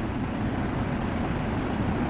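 Steady rushing background noise, even and unchanging, with no distinct events.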